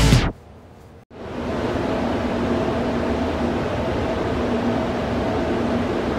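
Rock music cuts off right at the start. After about a second's gap a steady mechanical hum with a low drone sets in: the ventilation fans of a spray paint booth running.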